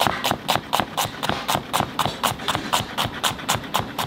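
Chef's knife thin-slicing an onion on a plastic cutting board. The blade knocks the board in a steady rhythm of about four cuts a second.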